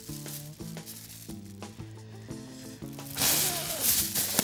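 A long plastic windbag being filled with a strong rush of blown air about three seconds in, the air stream drawing extra air into the bag, under background music of held notes and a steady light hiss.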